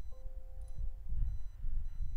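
Windows system warning chime, a short chord of steady tones lasting under a second and heard once, sounded by a confirmation message box with a warning icon asking whether to delete all chart studies.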